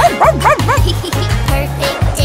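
Cartoon puppy yapping in a quick run of short, high yips in the first second, over a children's song backing track with a steady beat.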